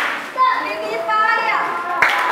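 Children's voices, one high child's voice calling out from about half a second in.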